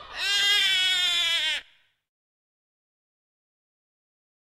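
A baby crying: one wailing cry about a second and a half long that cuts off suddenly.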